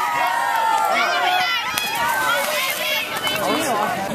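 Spectators' voices overlapping, several people talking and calling out at once, with no single voice standing out.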